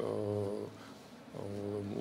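A man's low voice holding drawn-out hesitation sounds, a long steady 'ehh', dropping away for about a second in the middle, then a second held sound that runs straight into speech.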